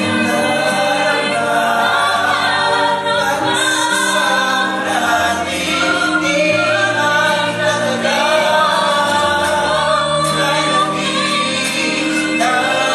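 Mixed-voice vocal ensemble of men and women singing a Tagalog ballad in close harmony, several parts held together in long sustained notes.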